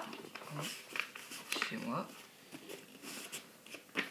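A sheet of paper being folded and creased by hand: soft rustles and a few light scrapes and taps.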